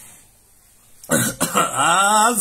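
A man clears his throat once, sharply, about a second in after a short quiet pause, and his voice follows straight after.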